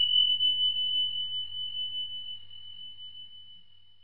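A single high chime struck once, ringing at one steady pitch and slowly fading away.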